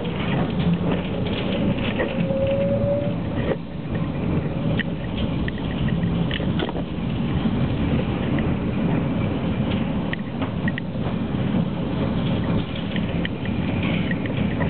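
Tram running along its tracks, heard from inside the car: a steady rumble with many rattles and clicks from wheels and body, and a brief, slightly rising whine about two seconds in.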